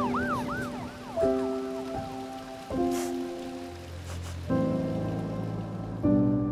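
Soft, slow film-score music: sustained keyboard-like chords that change every second and a half or so over a steady hiss. In the first second come a few short rising-and-falling cries, the kitten's mews.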